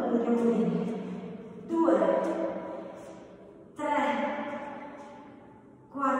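Music: a new sustained chord begins sharply about every two seconds and each fades away slowly, with echo.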